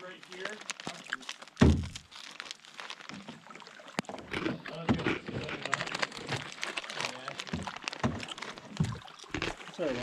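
Paddles and gear knocking against canoe hulls: a single heavy thump about a second and a half in, then a run of small clicks and knocks.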